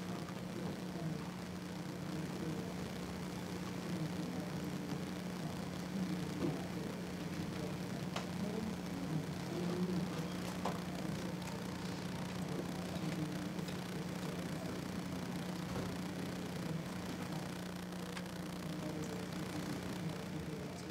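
Room tone dominated by a steady low hum, with a few faint clicks scattered through it.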